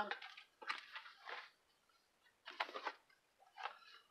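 Soft rustling and scraping of comic books in plastic bags with backing boards being handled and swapped, in a few short bursts.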